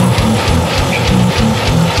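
Grindcore band playing: a distorted electric guitar riff over fast, relentless drumming with rapid kick-drum hits and cymbals.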